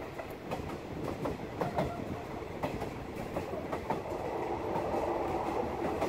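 Passenger train running along the track: a steady rumble with irregular clicks and knocks of the wheels over the rail joints, growing a little louder in the second half.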